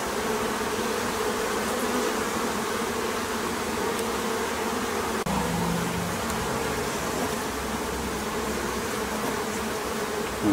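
Honeybees buzzing steadily in a dense hum around an opened observation hive, with a short click about halfway through.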